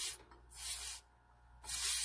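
Carbon dioxide hissing out of the neck of a beer bottle in three short bursts as the pressure is vented during a counter-pressure fill from a keg, letting the beer rise in the bottle.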